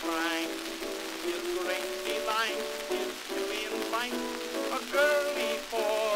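Early acoustic 78-era Pathé disc recording of a male ragtime singer with piano accompaniment, the voice wavering with vibrato. The sound is thin with no deep bass, over a steady crackle and hiss of disc surface noise.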